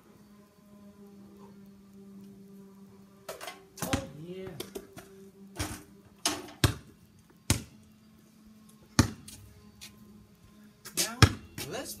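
Sharp, irregular knocks of a basketball bouncing on a concrete driveway and being dunked through an outdoor hoop's rim. A steady low hum sits underneath and stops about halfway through.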